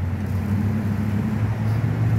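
Road traffic: a motor vehicle's engine running with a steady low hum.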